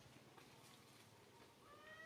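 A macaque's short coo near the end, a single pitched call rising slightly in pitch.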